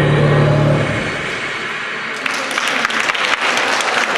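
The last held notes of the dance music end about a second in. An audience starts applauding a little over two seconds in.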